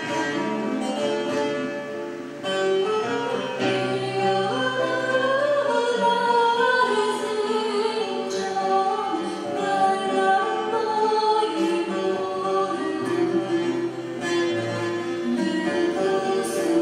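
A young woman singing into a microphone, accompanied by a plucked string instrument.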